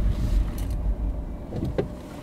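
Car driving slowly, its low engine and road rumble heard from inside the cabin, with a short knock near the end.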